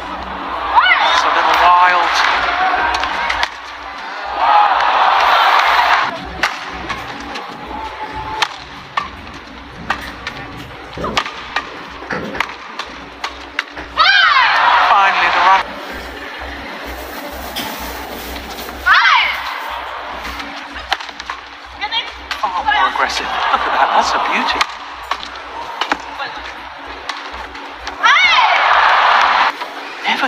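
Badminton doubles rallies in an indoor arena: sharp racket hits on the shuttlecock and shoe squeaks on the court. About six times, a point ends in a loud burst of shouting and cheering lasting a second or two.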